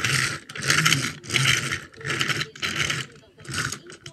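A child's voice making six rhythmic raspy growling vehicle noises while playing with toy cars.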